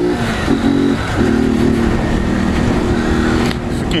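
Motorcycle engine running steadily under way, with a brief change in the engine note about half a second in. Near the end the engine sound fades under a rush of wind on the microphone.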